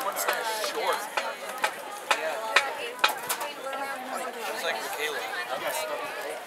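Spectators chatting in the stands, several voices talking over one another, with a few sharp clicks or taps.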